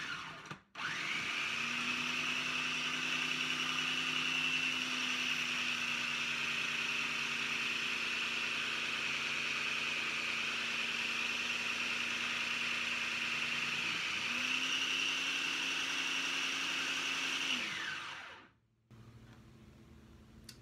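Food processor motor shredding a potato through its shredding disc, running steadily with a constant whine. It starts about a second in, drops out for a moment about two-thirds of the way through, runs again, then winds down near the end.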